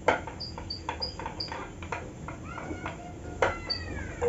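A whiteboard being wiped clean by hand: a run of quick rubbing strokes across the board, with short high squeaks and a couple of falling squeals near the end.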